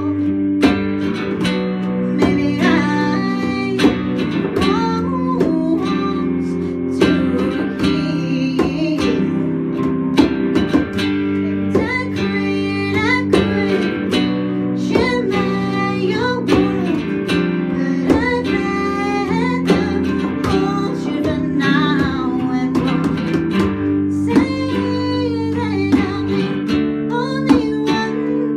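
Small band playing a song: a strummed baritone ukulele and an electric guitar under a woman's lead singing, with regular conga hits keeping the beat.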